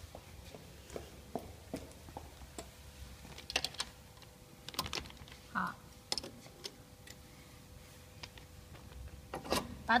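Irregular metallic clicks and clinks of an open-end wrench on the bolts of a packing machine's cutter-blade bracket as the blade mount is loosened and adjusted, over a faint steady machine hum.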